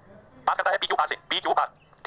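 Speech only: a man talking in three short phrases.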